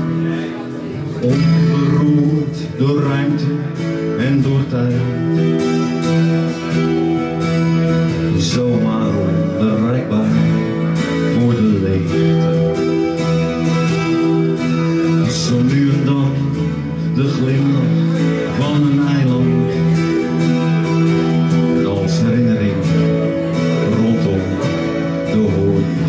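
Live acoustic guitar strumming together with an electric guitar, an instrumental passage between sung verses, with sustained notes that glide in pitch.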